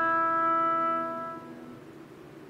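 An oboe holds the long closing note of a piece, steady at first and then fading out about a second and a half in, leaving only faint room tone.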